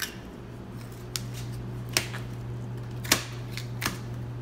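Butcher's knife clicking against bone and the cutting surface as a beef hind leg is broken down: five sharp clicks at uneven intervals, the loudest a little after three seconds, over a steady low hum.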